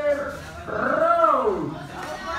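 Drawn-out human shouts: one held call fades out just at the start, then a longer yell of about a second rises and falls in pitch.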